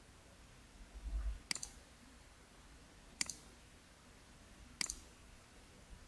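Computer mouse clicking three times, about a second and a half apart. A brief low rumble comes just before the first click.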